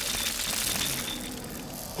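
Cartoon sound effect of ice freezing over a shut door: a high, hissing rush that slowly fades.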